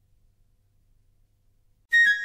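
Near silence with a faint low hum in the gap between two songs. In the last instant the next song starts sharply on a loud, high-pitched note.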